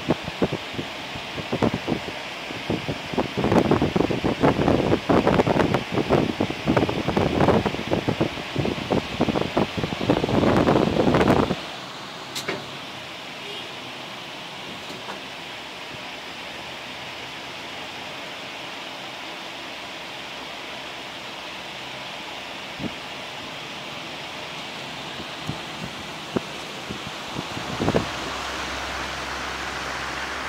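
Irregular rustling and crackling close to the microphone for about the first eleven seconds, then a steady hiss with a few faint clicks and a single thump near the end.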